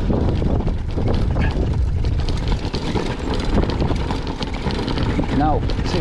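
Cannondale mountain bike juddering and rattling over a bumpy stone path: a dense low rumble with rapid, irregular clatter throughout, shaking like a jackhammer.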